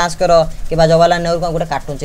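Speech only: a man talking in a fairly flat, even-pitched voice.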